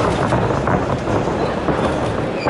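Loud, steady arena noise from a boxing bout in the ring, with scattered thuds of gloved punches and feet on the canvas.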